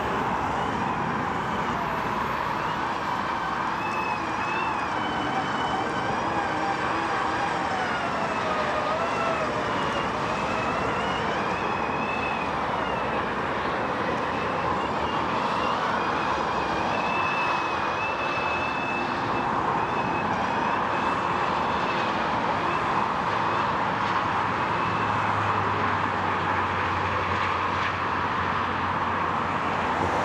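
Electric Formula Student race car driving a cone course: its motor whine rises and falls in pitch as it speeds up and slows through the turns, over a steady bed of tyre and wind noise.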